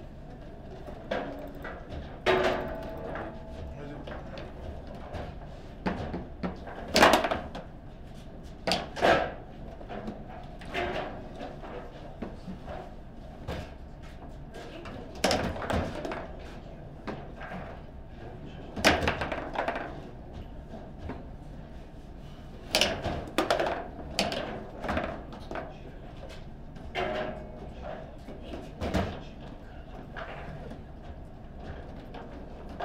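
Table football in play: irregular sharp knocks and clacks of the ball being struck by the plastic men on steel rods and banging off the table walls, with a few very loud shots, one of them scoring a goal.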